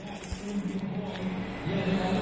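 A man's voice, low and indistinct, murmuring, with a short soft knock about a third of a second in.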